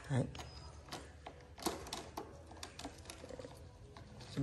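Light, irregular metallic clicks and rattles from a hand-handled wire quail trap and its springing door, one slightly louder about one and a half seconds in.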